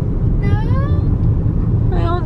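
Steady low rumble of a moving car heard from inside the cabin, engine and road noise together, with a voice calling out briefly about half a second in.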